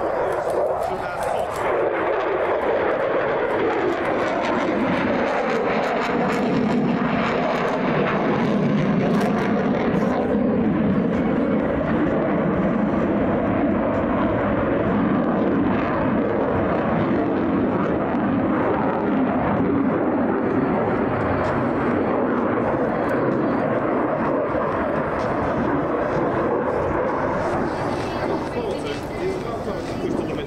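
A single-engine F-16 fighter jet flying a display routine overhead, its engine noise loud and unbroken. The pitch of the jet's note slides down and up as the aircraft passes and turns.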